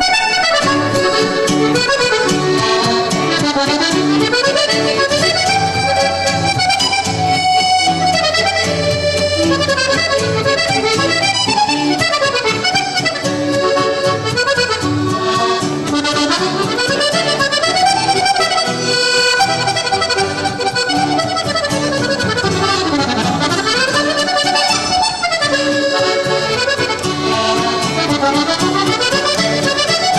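Piano accordion playing a lively mazurka with guitar accompaniment, striking up right at the start; the accordion carries quick melodic runs that rise and fall over a steady beat.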